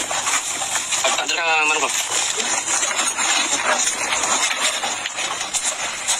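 Indistinct voices of people talking over a steady hiss, with one voice rising clearly for a moment about a second and a half in.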